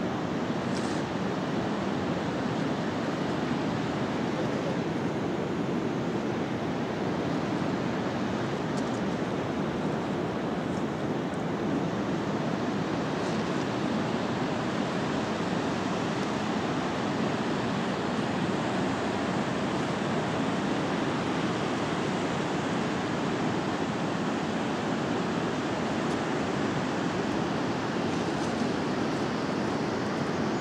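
A mountain river rushing over its stony bed, a steady unbroken rushing noise.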